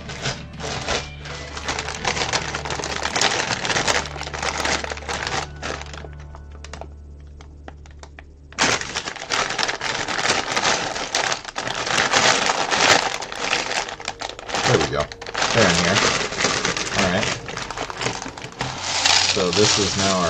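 Loose plastic building bricks clattering and a plastic bag of bricks crinkling as pieces are rummaged through and shifted, with a quieter lull a little past halfway. Background music runs underneath.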